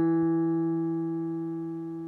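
Digital piano notes, struck just before, held down and fading slowly and evenly, with no new key struck.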